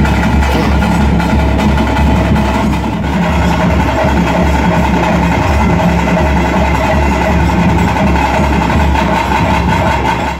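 Traditional ritual band music: a wind instrument holds a steady, sustained melody over continuous drumming on double-headed drums.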